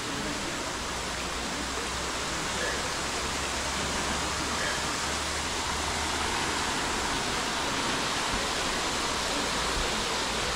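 Steady rush of running water at the thermal spring pools, growing slightly louder.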